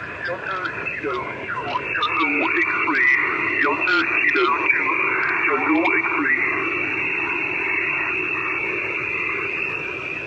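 Single-sideband voice received from the QO-100 satellite through the transceiver's speaker: a narrow, hissy radio voice with whistling tones that slide up and down in pitch, settling into steadier hiss and voice in the last few seconds.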